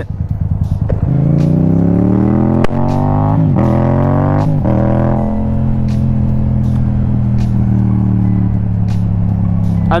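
Motorcycle engine accelerating away: its pitch climbs in about three steps with brief breaks as the rider shifts up through the gears, then settles into a steady cruising drone.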